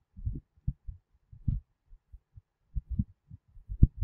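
Irregular, muffled low thumps and knocks of handling noise while lines are drawn by hand on a digital whiteboard, the loudest one near the end.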